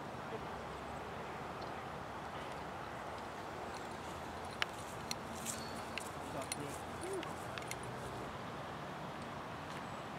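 Steady outdoor background hiss, with a scattered run of faint sharp clicks and ticks between about four and eight seconds in.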